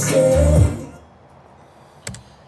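Music with deep bass hits played through an Electro-Voice Evolve 30M column line-array PA and its 10-inch subwoofer, picked up in a small room during a volume test. The music fades out within the first second as the volume is turned down, leaving low room hiss.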